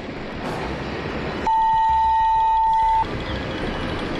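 A steady, high censor bleep, one pure tone about a second and a half long that starts and stops abruptly about a second and a half in, over a continuous noisy outdoor background.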